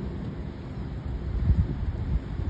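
Wind buffeting the phone's microphone, an uneven low rumble that gusts louder about one and a half seconds in.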